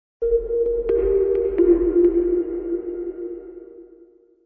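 Short electronic outro sting: a held low tone with a fainter high tone and a few short pings over it, fading away toward the end.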